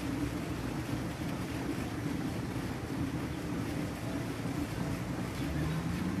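Steady outdoor background noise with wind rumbling on the microphone and a faint low hum underneath.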